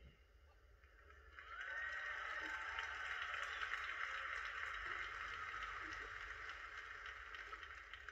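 Audience applause that starts about a second and a half in, holds steady, then slowly fades, heard through a laptop's speakers.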